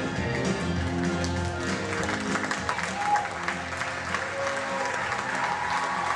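The end of a song's backing music, with guitar, fades as an audience breaks into applause about two seconds in. The clapping and cheering then carries on over the last notes.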